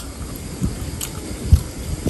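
Close-miked eating sounds: chewing and handling food with chopsticks, with a few soft clicks and a low thump about one and a half seconds in.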